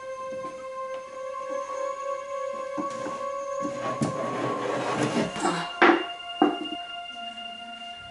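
Background music of long held notes, with a wooden chest scraping and knocking as it is dragged off the top of a wooden wardrobe, ending in two loud knocks about six seconds in.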